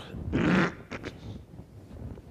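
A man's voice: one short vocal sound of about half a second, followed by a couple of faint clicks.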